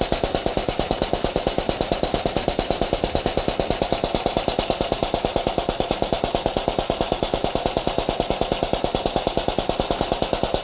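Air-operated diaphragm pump running fast while it pumps the filter system empty, its air exhaust giving a rapid, perfectly even pulsing of about seven beats a second.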